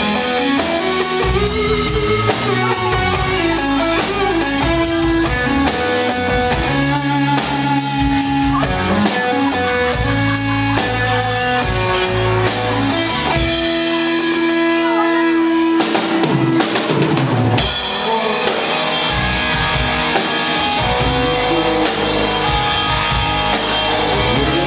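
Live rock band playing an instrumental passage: a drum kit keeping a steady beat under electric guitar and bass guitar through amplifiers. A little past halfway the drums thin out under held guitar notes, then come back in with a short noisy burst.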